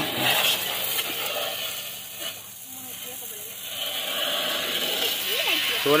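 Water jet from a Proffix 12 V DC portable pressure washer spraying mud off a car's lower body and wheel arch: a steady hiss that eases off around the middle and builds back up.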